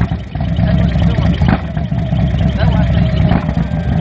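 Harley-Davidson touring bike's V-twin engine running steadily while riding, a loud low rumble with a brief dip just after the start.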